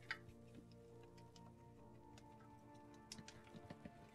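Faint light ticks and scrapes of a wooden craft stick stirring two-part epoxy in a small tray, coming more often near the end, under quiet background music.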